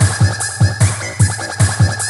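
Jungle Dutch-style electronic dance music: a kick drum hitting about four times a second in an uneven, bouncing pattern under a bright, high synth line.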